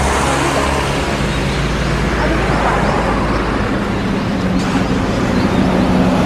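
Road traffic passing close by: tyre noise and engine hum from cars on a multi-lane road. Over the last couple of seconds a coach bus's engine hum grows louder as the bus draws alongside.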